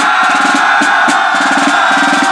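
Fifes and snare drums of an 18th-century style fife and drum corps playing a march, the fifes holding long high notes over fast drumming.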